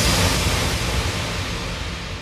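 The end of a hardstyle track: a wash of noise, the reverb tail of the last hit, fading out steadily with no beat left.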